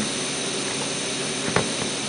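Steady whirring hiss of a small cooling fan on a stepper-motor driver board's heat sink, with one sharp click about one and a half seconds in.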